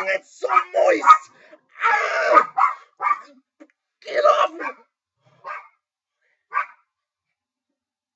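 A man's wailing, yelping cries of pretend terror in a run of short, broken outbursts. They thin out to two brief cries a little past the middle.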